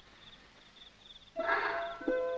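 Crickets chirping in a steady run of short, rapid pulses. About a second and a half in, a brief, louder burst of noise covers them.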